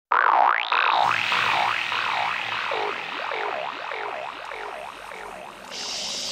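Opening of a dark psytrance track: an electronic tone wobbling up and down in pitch about twice a second, its sweeps slowly sinking lower and fading, over a low synth bed that comes in about a second in. A brief hissing swell enters near the end.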